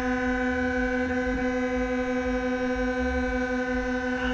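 Fairground ride's warning horn sounding one long, steady, unchanging tone, over a low rumble.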